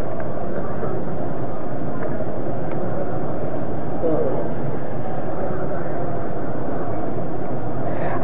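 Steady, fairly loud background noise with no rhythm, with a faint distant voice briefly audible about four seconds in.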